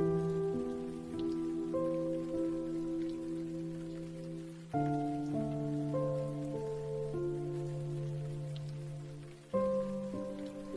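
Slow, soft piano music: held chords that change together about every five seconds, each struck and then slowly fading. Underneath is a steady patter of rain.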